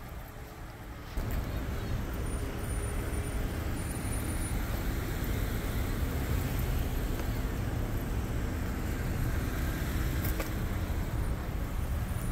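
Busy parking-lot traffic noise: cars moving and running, a steady low rumble with a wider hiss over it. It gets louder about a second in.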